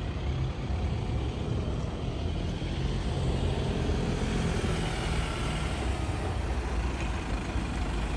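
Road traffic: a steady low rumble of a motor vehicle engine running close by, with the noise of passing traffic.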